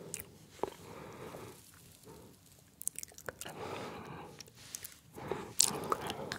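Close-miked mouth sounds of eating soft gummy candy: scattered wet clicks and smacks, with a louder cluster near the end as a gummy goes into the mouth to be bitten.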